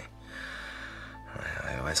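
Soft background music with long held tones, over a breathy sigh; a man's voice comes in low about one and a half seconds in.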